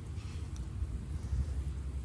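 Steady low background rumble with no shot or other distinct event.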